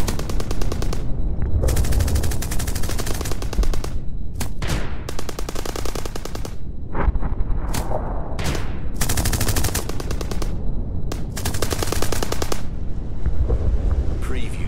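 Automatic gunfire in repeated bursts of rapid shots: several long bursts of a second or more and a few short ones, with brief pauses between them.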